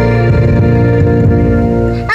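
Music: a sustained chord with deep bass.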